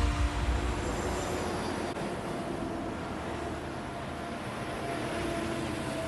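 A low boom just at the start, then a steady rumbling whoosh with a few faint held tones under it: a cinematic transition sound effect.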